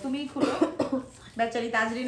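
Women talking, broken by a short cough in the first second.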